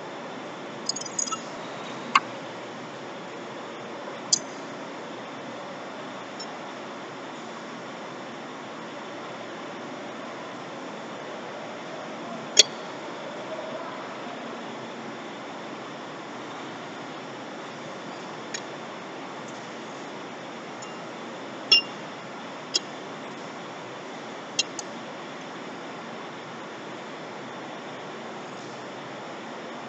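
Scattered sharp metallic clinks, about seven of them with the loudest a little under halfway through, as the lug nuts and nut caps of a truck wheel are handled, over a steady background hiss.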